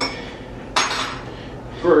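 Metal spoon clinking against the side of a pot of chili as it is stirred: a light clink at the start and a louder, ringing clink just under a second in.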